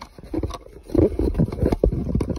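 Hands and a cable rubbing and knocking close to the microphone as a plug is pushed into the output jack of a B06 Bluetooth audio receiver, with a low rumble of handling, loudest about a second in.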